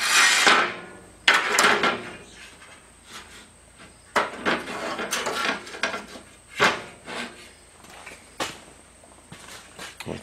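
Sheet-steel hat channel sections being handled, slid and set down on a workbench: a run of scrapes and clanks, with a sharp knock about six and a half seconds in and a lighter click near the end.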